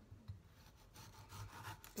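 Knife sawing through a thick aloe vera leaf, faint repeated cutting strokes.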